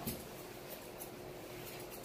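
A few faint snips of thinning shears cutting through a Yorkshire terrier's coat, over a quiet steady hum.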